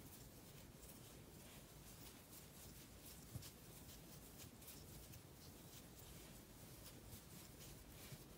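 Near silence with faint, scattered scratching and ticking of a crochet hook drawing yarn through stitches, and one slightly louder tick about three and a half seconds in.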